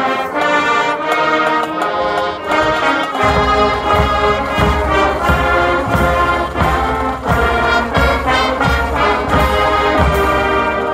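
Marching band playing the national anthem: brass holding chords, joined about three seconds in by bass drum strokes roughly every two-thirds of a second.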